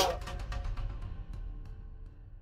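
Music fading out to silence.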